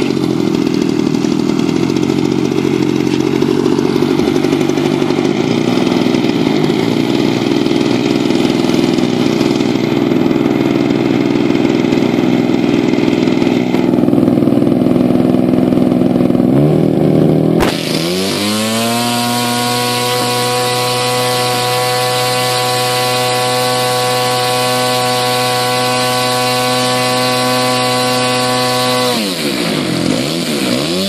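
A radio-controlled model aircraft's engine and propeller running on the ground. It runs rough and busy at first; a little past halfway the pitch rises and settles into a smooth, steady note, which wavers again near the end.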